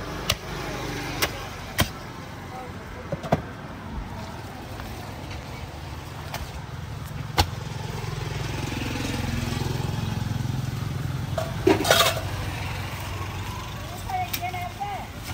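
Heavy knife chops striking a wooden chopping block as a large fish is cut: a handful of single sharp knocks, spaced irregularly. A passing road vehicle's low rumble swells in the second half, and there is a short burst of louder clattering near the end.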